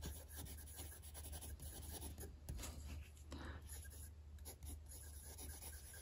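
Faint scratching of a Diplomat Excellence A2 fountain pen's medium nib writing on paper, in short irregular strokes as the letters are formed. A low steady hum runs underneath.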